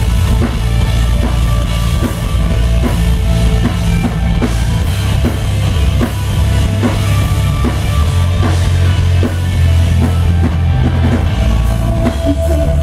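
Live rock band playing loud through a stage PA, heard from the crowd: electric guitar and electric bass over a steady drum-kit beat, with heavy low end and no vocals.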